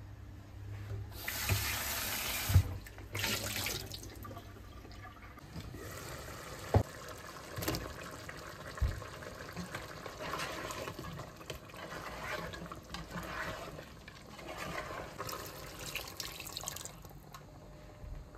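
Kitchen tap running into a stainless steel sink for about a second and a half, with a shorter run soon after. Then a pot of stew is stirred with a spoon, with scattered soft knocks.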